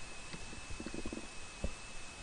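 Pause in narration: steady faint hiss of the recording with a thin high whine, and a few faint low ticks scattered through it.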